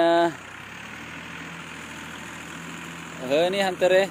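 Tractor engine running steadily in the distance, a faint low hum under light outdoor hiss.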